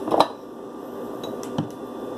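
Glass bottles knocking on a kitchen counter as they are handled: one sharp clink just after the start and a softer knock about a second and a half in, over a steady low room hum.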